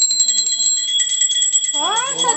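Small brass pooja hand bell rung rapidly and continuously, its clapper striking many times a second over a steady high ring, as is done during an aarti offering. Voices start near the end.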